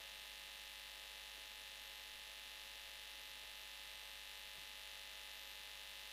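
Faint, steady electrical hum with a band of hiss from the audio feed, unchanging throughout, with no other sound over it.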